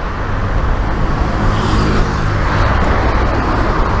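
Road traffic on the adjacent street: a steady rumble of motor vehicles, with one passing vehicle's engine swelling and fading about halfway through.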